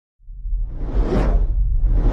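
Logo-intro whoosh sound effect rising out of silence: a rushing swell that peaks about a second in and fades, over a deep continuous rumble.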